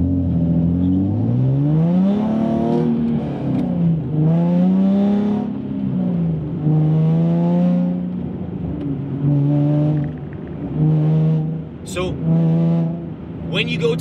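Nissan 370Z's 3.7-litre V6 revved up and back down repeatedly as the throttle is applied and released, loading and unloading the drivetrain. The pitch climbs over the first couple of seconds and rises and falls a few more times, then gives three short blips near the end.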